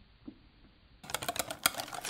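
Near silence, then about a second in a quick run of light clicks and taps as a glass mixing bowl of egg-yolk batter is handled.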